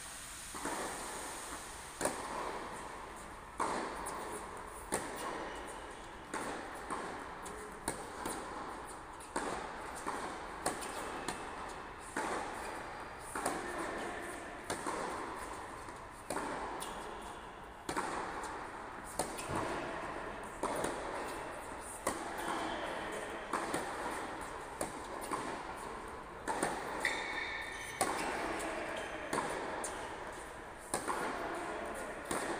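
Tennis balls struck by racquets during a rally, about one sharp hit a second, each echoing in a large empty indoor arena.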